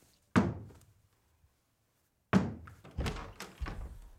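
Dull thuds on a wooden door: a sharp one just after the start, another about two seconds later, then a few more in quick succession.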